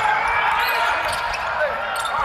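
Game sound on a hardwood basketball court: a ball being dribbled during live play, with faint voices in the arena.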